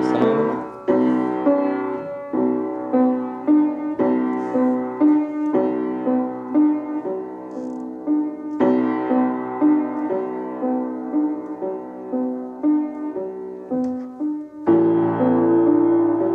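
Acoustic upright piano played by hand: a rhythmic pattern of repeated chords and melody notes in the middle register, with a fuller, louder chord entering near the end.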